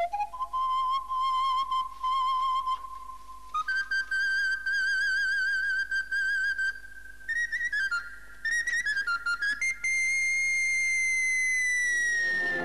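Solo high flute-like melody from the film's score: slow held notes with vibrato that step upward, quick ornamented runs, then a long high note that sags slightly in pitch near the end.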